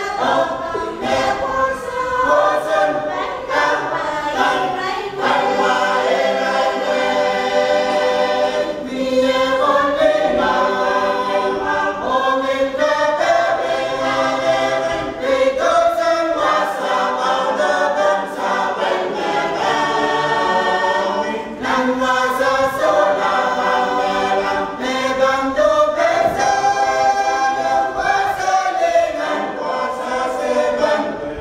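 Mixed choir of men and women singing a hymn unaccompanied, in long phrases broken by brief pauses for breath.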